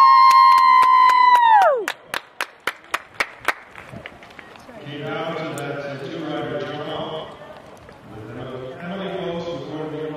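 A loud, steady high tone held for about two seconds, sliding up as it starts and dropping away as it ends, followed by a quick run of about seven sharp clicks. From about halfway through, a man's voice speaks.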